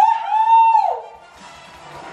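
A woman's excited high-pitched yell, rising in pitch, held briefly and then falling away, lasting about a second. Film-trailer music carries on, quieter, after it.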